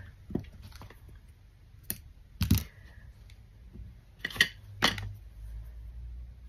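Hands handling embroidery supplies, a card of thread and a needle, on the work table: a handful of light clicks and taps spaced out over a quiet background, the sharpest about two and a half seconds in.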